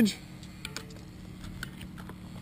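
A few faint, light clicks and taps of a plastic chain-cleaning device being handled and fitted onto a bicycle chain, over a steady low hum.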